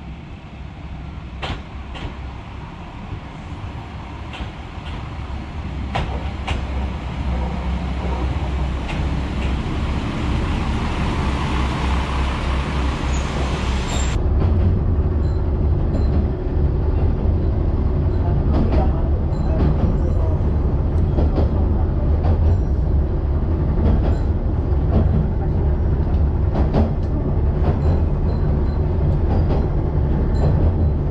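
Akechi Railway diesel railcar drawing into the platform, growing louder, with scattered clicks. After a sudden cut about halfway, the railcar's engine and wheels rumble steadily, heard from inside as it runs.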